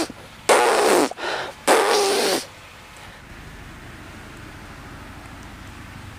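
Short raspy blasts of air pushed through pursed, buzzing lips from puffed-out cheeks, twice, in the first two and a half seconds. This is the cheek-squeeze exhalation practised for didgeridoo circular breathing. After that only a low steady hiss remains.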